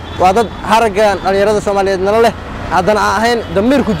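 A man speaking, with street traffic running in the background.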